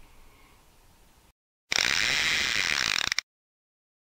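Short intro sound effect under a channel logo: a loud, dense burst of noise with a fast rattling texture, about a second and a half long, that starts and cuts off abruptly.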